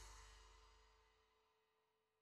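Near silence: the tail of a fade-out dies away at the very start, then nothing.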